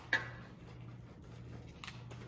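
A single sharp metallic click as a metal batter scoop knocks against a stainless steel mixing bowl, followed by a softer tap near the end over a faint steady low hum.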